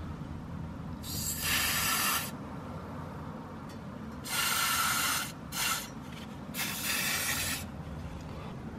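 Aerosol spray can with a straw nozzle hissing in four bursts, each about a second long except a brief third one.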